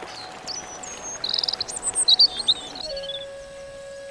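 Birds chirping and calling in quick high trills over a steady hiss. Just under three seconds in, the hiss and birdsong cut off and give way to a quiet, steady held music tone.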